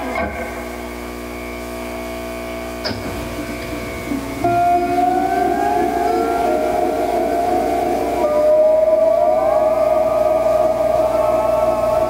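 Electric guitar through an amplifier, held notes ringing on, with louder notes swelling in about four seconds in and again near eight seconds that slide upward in pitch.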